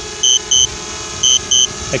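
DJI Spark low-battery warning beeping in short high double beeps, a pair about once a second, over the steady hum of the drone's propellers as it hovers down to land a few feet away.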